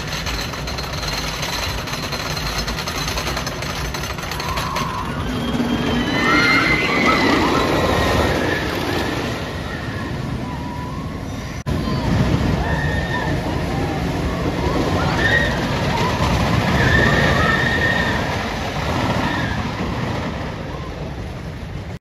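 White Lightning wooden roller coaster train rumbling along its track, with riders screaming on and off, loudest about six to eight seconds in and again over the second half.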